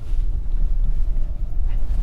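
Low, steady rumble inside the cabin of a 2023 Skoda Kodiaq SUV driving slowly over a rough dirt track: its TSI engine running, with tyre and road noise.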